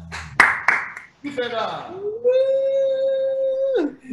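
Two sharp smacks, then a man's voice calling out and holding one long steady note for about a second and a half before it drops away. It is an exuberant wordless cheer after the end of a live guitar song.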